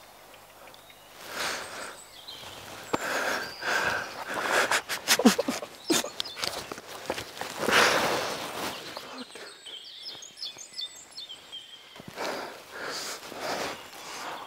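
A man's heavy breathing and the rustle of clothing and brush, with a run of sharp clicks about five seconds in and faint high chirps near the middle.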